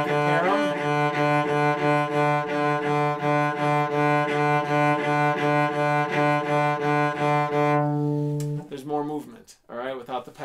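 Cello bowing a single low note in even back-and-forth strokes, about two to three bow changes a second, with the wrist and fingers kept from their passive give so the arm does the work. The last stroke is held longer and stops shortly before the end.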